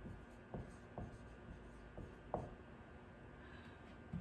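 Dry-erase marker writing on a whiteboard: several short, faint strokes over the first two and a half seconds as a word is written.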